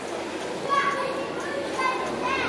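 Children's high voices calling out over street background noise, starting about half a second in.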